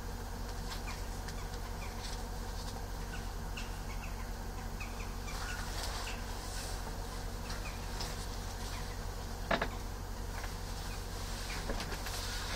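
Steady low hum under faint, scattered short high chirps, with a single sharp click about nine and a half seconds in.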